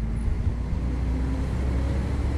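Street traffic: a road vehicle's engine running with a steady low rumble.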